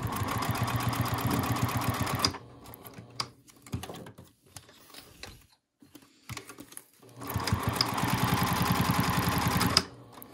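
Juki DU-1181N industrial walking-foot sewing machine stitching a seam in two runs of about two to three seconds each, a rapid even chatter of stitches. Between the runs there is a pause of about five seconds with only light handling clicks while the fabric is turned.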